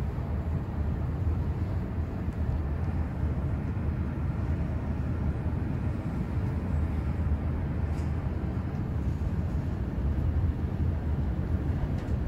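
ThyssenKrupp traction elevator car riding up its hoistway on an express run past the unserved floors: a steady low rumble of travel noise heard inside the cab.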